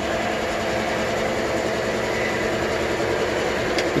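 Steady machine hum with a faint whine, even and unchanging throughout.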